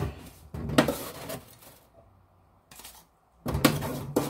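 A glass cup and other things handled on a kitchen counter: knocks and clinks in two spells, with a quiet gap of about a second and a half between them.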